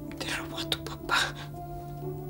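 Soft background music of sustained held notes, with two short breathy whispered sounds from a person, about a quarter second in and about a second in.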